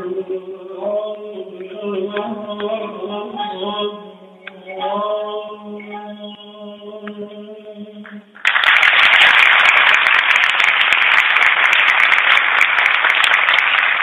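A male Persian classical singer holds and bends the last long notes of a tasnif over tar accompaniment. About eight seconds in the singing stops and loud audience applause breaks out and continues.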